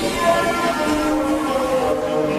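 Ambient dub music: a chord of several long held, horn-like tones that shift to new notes partway through.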